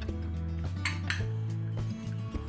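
A green plastic hand-held lemon squeezer being pressed on a lemon half, with one short clatter about a second in.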